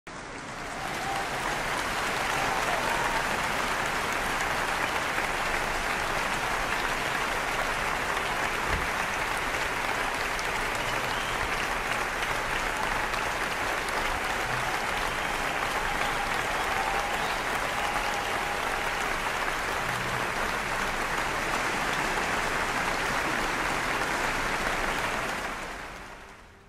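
An audience applauding steadily, a dense even clapping that swells up over the first second or two and fades away at the very end.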